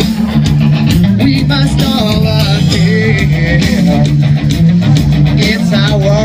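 Loud live rock band playing: electric guitars, bass guitar and drums.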